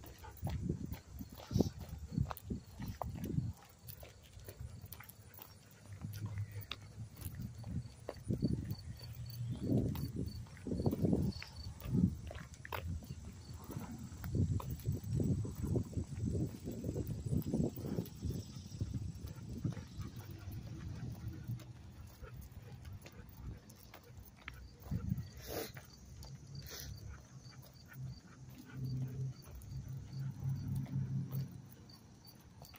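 A black Labrador panting and sniffing close to the microphone, with footsteps on gravel.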